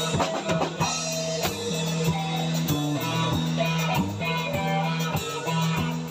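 Two electric guitars and a drum kit playing an instrumental piece together, over a steady drum beat.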